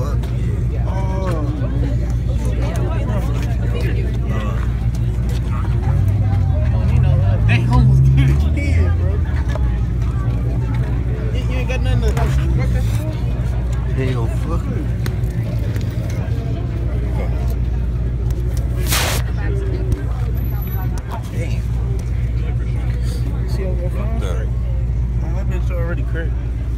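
Indistinct voices over a steady low rumble, with one sharp click about nineteen seconds in.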